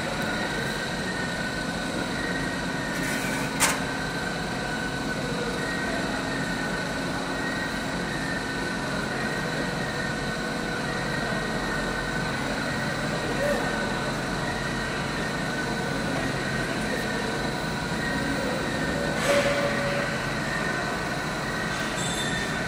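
Automatic brake lining hot press line with its robot arm running: a steady machine drone with constant high whining tones. A sharp click comes about three and a half seconds in, and a brief louder burst near the end.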